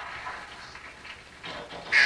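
Low background noise with faint, indistinct sounds, then near the end a loud, high-pitched squeal from a child.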